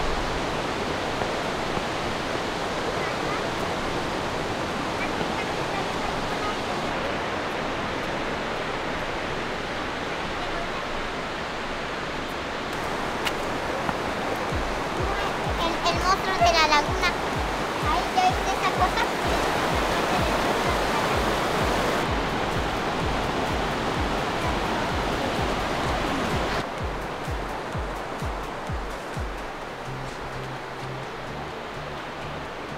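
Steady rush of a fast-flowing creek over rocks. Background music with a steady low beat comes in about halfway and runs almost to the end.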